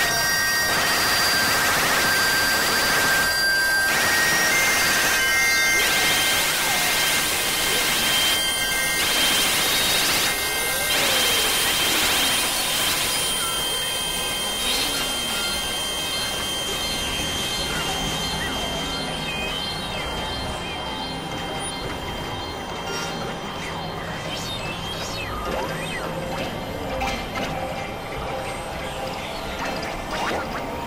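Experimental electronic noise music from synthesizers: a dense, hiss-like wash of noise with many steady high tones, broken by short dropouts every two to three seconds. After about fifteen seconds it thins into quieter drones with slow rising-and-falling pitch glides.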